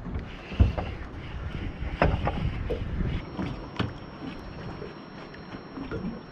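Scattered knocks and clatter of rods and gear being handled on a small fishing boat. The loudest, deepest thump comes about half a second in and further knocks follow at about 2 and 4 seconds.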